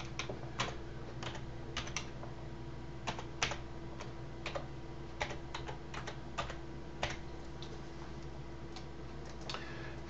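Typing on a computer keyboard: irregular key clicks in short runs with pauses, over a faint steady hum.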